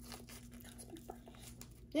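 Faint crinkling of a snack-bar wrapper being handled, a run of small scattered crackles, as a piece of the bar is broken off and taken out.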